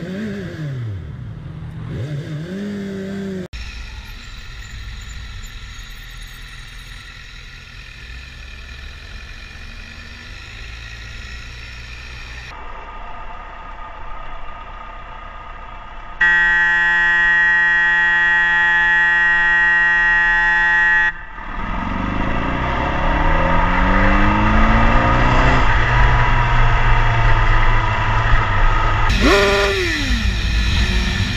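Motorcycle engine and traffic heard from a helmet camera, with revs falling and rising at the start and again climbing several times as the bike accelerates in the second half. In the middle, a loud steady tone is held for about five seconds.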